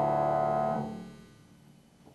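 Upright piano holding a final sustained chord that dies away about a second in as the keys are released, leaving near silence.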